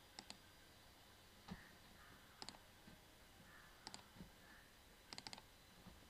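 Faint computer mouse clicks, mostly in quick pairs like double-clicks, with a soft thump about a second and a half in and a quick run of four clicks near the end.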